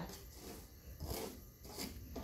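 Wooden spatula scraping and stirring dry rice with cinnamon as it toasts in a large metal pan, a few separate scraping strokes.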